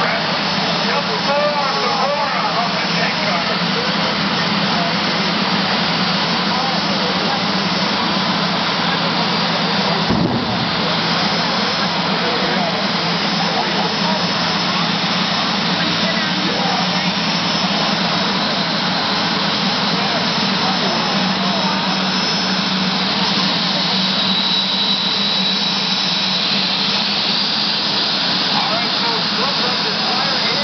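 Jet dragsters' turbojet engines running steadily and loudly, a continuous rushing noise with a thin high whine over it and a brief change about ten seconds in.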